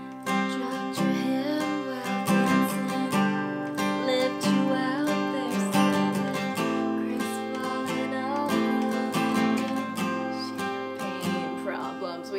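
Steel-string Taylor acoustic guitar, capoed at the fifth fret, strummed through a G–D/F#–Em7–Cadd9 chord progression in a steady down-up-up pattern, with soft singing over it.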